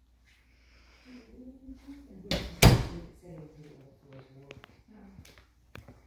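A hinged closet door pushed shut, closing with two loud knocks in quick succession about two and a half seconds in.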